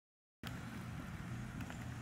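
Silence, then about half a second in a steady outdoor background starts: a low hum under a faint hiss, with a few soft ticks.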